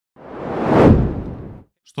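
Whoosh transition sound effect: a single rush of noise that swells to a peak just under a second in and fades away by about a second and a half.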